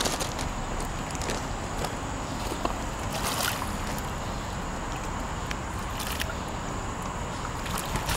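Water sloshing and splashing as a hooked common carp swirls at the surface and is scooped into a landing net, over a steady background hiss.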